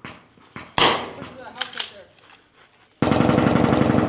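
Gunfire: a loud shot about a second in and a couple of quieter cracks, then a sudden, loud burst of rapid automatic fire through the last second. The rifles are firing blanks.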